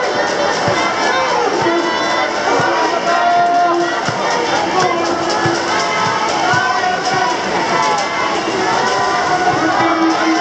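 Spectators cheering and shouting for swimmers during a race, mixed with music playing throughout.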